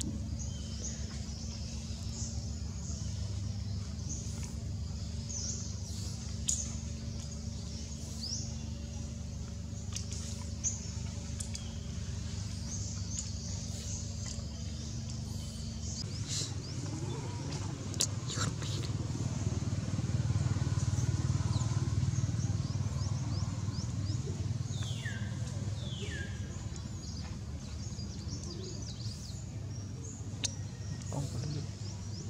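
Outdoor ambience: a steady low engine-like hum under scattered high bird chirps. About halfway the hum gives way to a low rumble that swells and fades, and two quick falling calls sound near the end.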